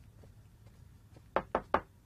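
Three quick knocks on a wooden office door, evenly spaced, in the second half of the moment.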